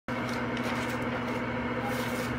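A steady hum with several fixed tones over an even background noise.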